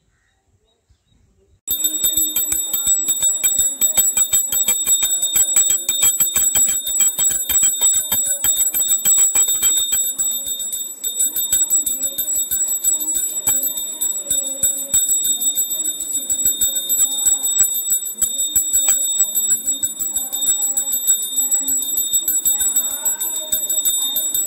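Pooja bell rung rapidly and continuously: fast, dense metal strikes with a steady high ringing. It starts suddenly about two seconds in, after near silence.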